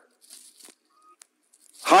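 Disposable razor scraping through a thick moustache: a few faint, short scrapes. A man's voice starts near the end.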